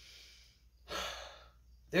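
A woman sighing: a faint breath out, then a short audible sigh about a second in.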